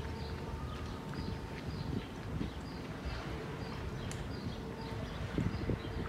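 Outdoor garden ambience: small birds chirping repeatedly over a low steady background rumble with a faint steady hum, and a few soft thumps near the end.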